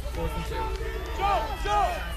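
Several raised voices from players and spectators overlapping and shouting, over a steady low hum.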